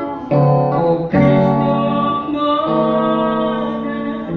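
A man singing a slow worship song into a microphone with acoustic guitar accompaniment, holding long notes.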